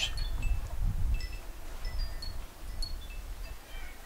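Scattered short, high tinkling tones at several pitches, like a wind chime, over a low rumble.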